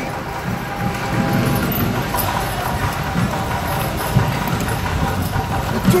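Horse-drawn carriage moving along a city street: the horse's hooves clopping on the pavement and the carriage wheels rolling, a steady rumble with irregular hoof knocks.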